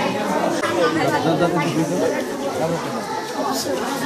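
Many people talking over one another: the steady, unclear chatter of a crowd.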